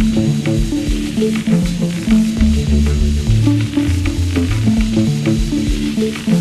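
Acid techno played live on Roland TB-303 bass synthesizers and a Roland TR-606 drum machine: low, stepped, sequenced bass lines interlocking under a hissing, sizzling texture with light ticking.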